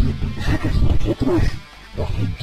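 A character's voice speaking Spanish in an animated short, buried in loud background music with guitar: the dialogue is mixed so that the words are hard to make out.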